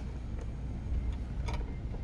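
Two faint small clicks, about half a second and a second and a half in, as a screw with a plastic spacer is handled against the TV's wall-mount bracket, over a steady low background hum.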